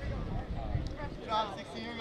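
Players' and spectators' voices calling and chattering at a baseball field, with a low rumble in the first second.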